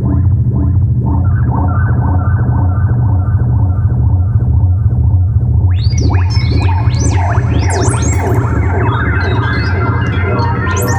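Moog Matriarch analog synthesizer playing dry, with no external effects: a steady deep bass drone under a fast repeating pattern of filtered notes, about four a second. About six seconds in, high sweeping chirp tones come in over it.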